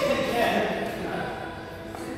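A person's voice, without clear words, loudest in the first second, over background music.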